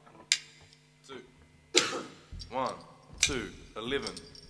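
A single sharp drumstick click, then a few short calls from a voice: a count-in just before the band starts the song.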